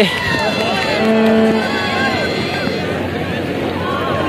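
Players' voices shouting and calling across an open cricket field, with one held shout about a second in, over a steady outdoor background hiss and distant chatter.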